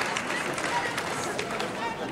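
Applause from the members in a large parliament chamber, many hands clapping at once, with scattered voices mixed in; it thins slightly toward the end.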